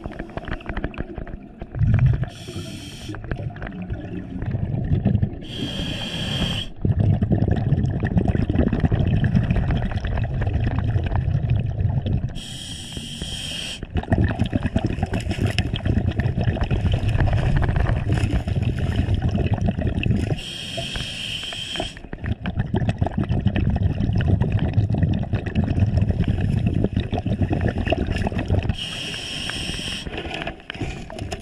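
A scuba diver breathing through a regulator underwater: a short hiss of inhalation about every seven or eight seconds, each followed by a long bubbling rumble of exhaled air.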